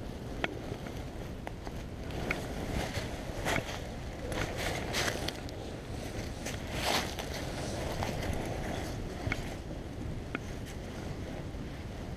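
Dry leaves crackling and nylon jacket fabric rustling in scattered short clicks as a tarp door is staked out on leaf-covered ground, over a steady low rumble of wind on the microphone.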